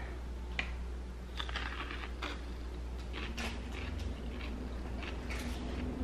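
Faint, scattered clicks and rustles of hands handling things, a few every second, over a low steady hum.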